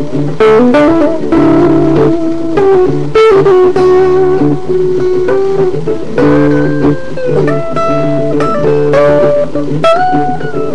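Guitar playing a rock instrumental passage: a lead line of held notes, several bent up or down in pitch, over a steady low bass part.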